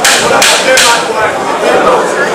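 A rapid run of sharp strikes, about three a second, stopping just under a second in, over the murmur of a crowd.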